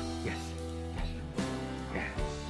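Background music led by guitar, with held chords that change about one and a half seconds in.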